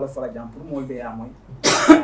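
A man talking, then a single short, loud cough close to the microphone near the end.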